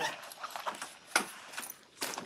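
A few faint clicks and small handling noises, with one sharper click just over a second in.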